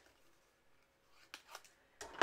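Near silence, broken by two faint short snips of small craft scissors cutting paper strips about a second and a half in.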